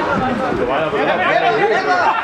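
Several voices talking and calling out over one another: chatter from spectators and players around a football pitch.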